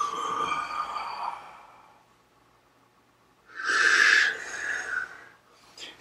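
A man's deep, audible breaths during a rib-cage breathing exercise, hands pressing on the lower ribs as the chest expands and compresses. One breath fades out over about two seconds; after a pause, a second breath starts about three and a half seconds in and lasts about two seconds.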